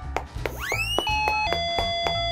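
Background music with a steady beat. About half a second in, a rising swoop sound effect is followed by a two-note falling chime like a doorbell: the higher note is short and the lower note is held.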